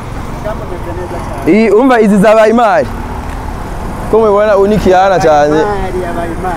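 A man speaking close to the microphone in two short phrases, with a pause between them, over steady low background noise.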